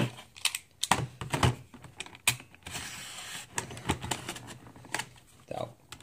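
Tightly sealed clear plastic blister packaging of a die-cast model car being cracked and pried open by hand: a run of sharp clicks and crackles, with a longer crinkling stretch around the middle.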